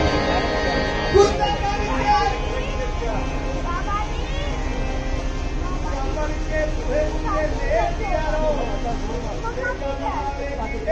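The music stops early on, leaving a murmur of many men's voices talking at once over a steady low hum, with one brief thump about a second in.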